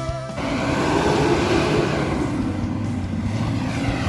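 A 4x4's engine revving up under load and easing off again, in a short break in rock music. The music comes back right at the end.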